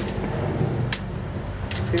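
Plastic juggling rings clicking against each other a few times as they are handled, over a steady low background rumble.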